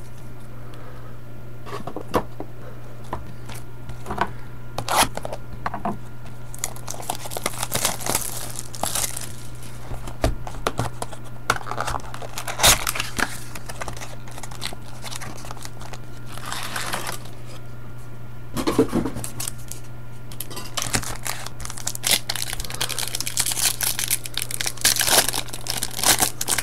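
A cardboard trading-card vending box being torn open by hand and its wrapped jumbo packs pulled out, with irregular tearing and crinkling of cardboard and foil wrappers over a steady low electrical hum.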